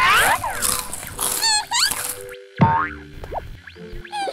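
Cartoon sound effects: springy boings and quick sliding whistles over light music. A little past halfway the sound drops out briefly, then comes back with a sharp hit and a falling glide.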